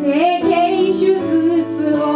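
A woman singing live while accompanying herself on a keyboard: held chords under a vocal line that slides between notes.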